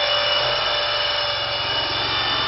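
Steady machine hum, even in level, with several held tones over a low, quickly pulsing rumble.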